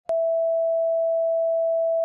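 Steady electronic test tone of the kind played with colour bars, one unchanging pitch, starting with a click.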